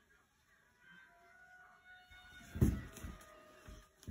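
Fleece blanket rustling and thumping as a rose-ringed parakeet tussles with it, loudest about two and a half seconds in, with smaller rustles after. Faint steady tones run in the background.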